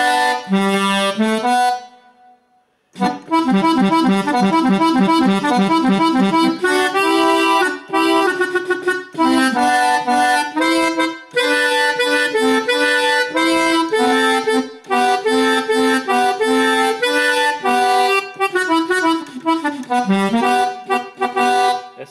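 Sampled Hohner Corona II button accordion in dry tuning, without the tremolo of a swing-tuned accordion, played on a Korg keyboard in a norteño style. A short phrase, a pause of about a second, then melody and chords run on without a break.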